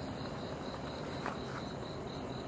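Night insects, crickets, chirping in a steady, even pulse of about four chirps a second over a faint background hiss.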